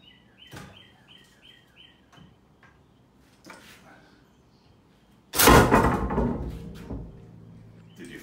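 A Hawaiian sling firing a 1/4-inch spear shaft: a sudden loud smack about five seconds in, followed by a metallic clattering rattle that dies away over about a second and a half.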